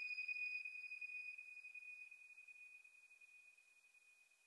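The tail of a minimal deep tech track after the beat has stopped: a single thin, high electronic tone dying away over about three seconds.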